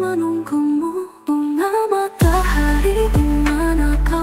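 Instrumental break of an Indonesian pop song: a lead melody moves in steps over held chords, with a short drop-out just after a second in. A little past the halfway point a deep bass comes in beneath it.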